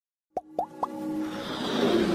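Intro sound effects for an animated logo: three quick rising plops about a quarter second apart, then a swell of music that builds steadily toward the end.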